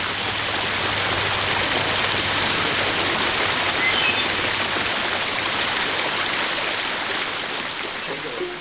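Rows of arching fountain jets splashing steadily into a long stone water channel: an even, dense rush of falling water that eases slightly near the end.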